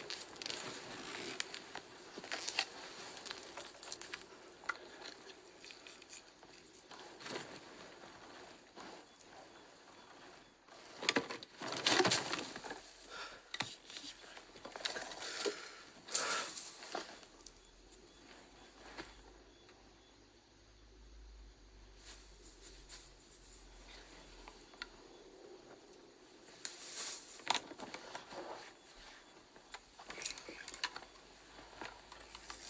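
Dry reed stalks rustling and crackling as a person moves through a reed bed, in irregular bursts: loudest about 11 to 12 seconds in, again around 16 seconds and near the end.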